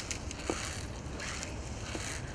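Wind rumbling on the microphone, with a few quick hissing swishes of fly line being stripped hand over hand through the rod guides in a fast retrieve.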